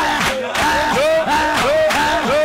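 Shouted prayer: a woman and other voices yelling in short, repeated rising-and-falling cries over backing music with a steady beat.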